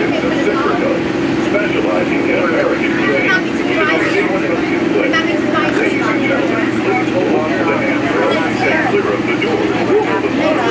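Walt Disney World monorail running at speed, heard from inside the car as a steady low drone, with passengers talking indistinctly over it.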